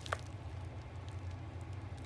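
Faint handling of scissors against a plastic mailer bag over a steady low hum, with one short click just after the start.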